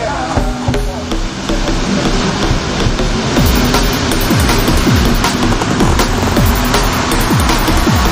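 Electronic dance music with a steady beat. From about three and a half seconds in, a falling bass sweep repeats on the beat.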